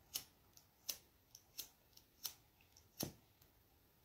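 Disposable cigarette lighter being struck again and again, about five sharp clicks roughly 0.7 s apart with fainter ticks between, as it is worked to light a cigarette.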